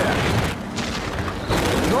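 Film battle sound effects: a low rumbling boom over background gunfire. The sound dulls for about a second in the middle, then the noise of the fighting comes back up.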